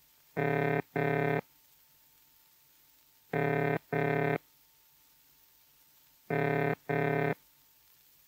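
Early British Post Office automatic-exchange ringing tone: a low-pitched burring note in pairs of short bursts, three pairs about three seconds apart with a pause after each pair. It is the signal that the dialled number is being rung.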